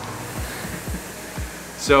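Concept2 rowing machine's air flywheel whirring under light, easy strokes, over background music with a steady low beat.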